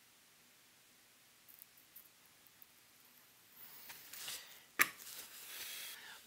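Soldering iron working a solder joint on an RCA jack's brass terminal: a few faint ticks, then a soft hiss building from a little past halfway, with one sharp click near the end.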